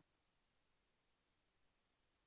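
Near silence: the audio track is essentially empty.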